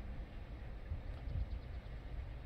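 Low, steady rumble of background noise inside a parked car's cabin, with no distinct event.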